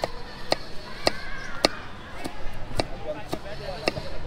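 Kitchen knife chopping cucumber on a wooden cutting board: a steady run of sharp knocks, about two a second, each stroke going through the cucumber into the board.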